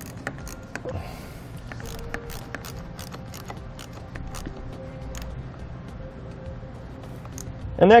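Scattered small metallic clicks and ticks of a nut being threaded by hand onto the positive battery post's stud over a cable ring terminal.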